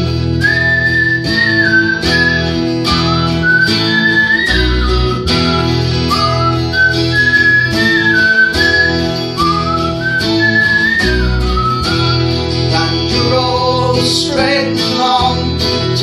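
Acoustic guitar strummed steadily while a man whistles the melody over it, a single high line rising and falling. The whistling stops about two seconds before the end and the strumming carries on.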